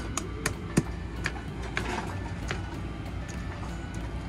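A small spiked kitchen mallet pressed and tapped onto squishy gel beads on a plate: about seven light, irregular clicks and taps, mostly in the first two and a half seconds, over a low steady hum.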